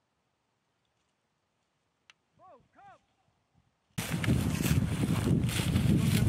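Near silence with a faint click and two short, faint arched calls. About two thirds of the way in, a loud rustling of footsteps through dry grass and brush begins abruptly, with wind on the microphone.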